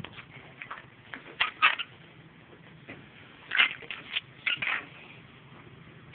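Swimming-pool water splashing and sloshing in a few short, irregular bursts as the dive light and the hand holding it go under the surface.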